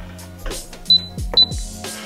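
Two short high beeps about half a second apart from an LED/UV gel-nail curing lamp as its timer starts, over background music with a steady beat.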